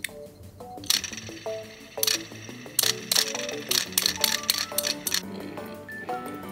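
Light metallic clicks and clinks from a die-cast Tomica cement mixer truck toy being handled and set down: single clicks about one and two seconds in, then a quick run of them near the middle. Background music plays throughout.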